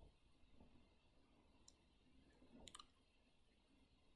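Near silence, with a faint click of a remote control button a little past halfway through, as the on-screen selection moves.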